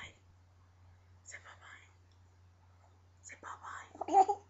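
Faint whispering, two short breathy phrases about a second in and again near the end, over a steady low electrical hum.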